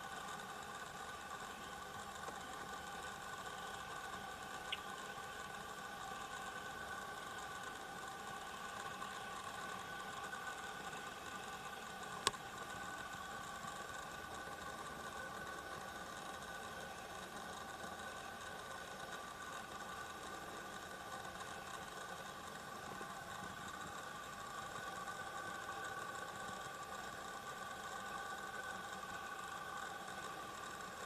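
Faint steady hum throughout, with one sharp click about twelve seconds in and a smaller click near five seconds.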